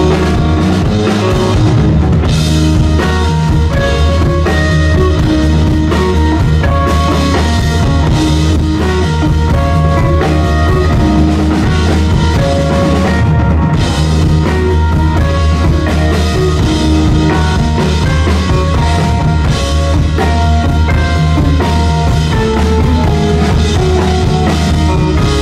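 A live rock band playing an instrumental passage: a drum kit keeping a steady beat under guitar and keyboards, with a strong bass line and no singing.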